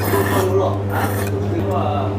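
Stir-fried pulled noodles being slurped off chopsticks, several rasping slurps with the strongest near the start. A steady low hum runs underneath.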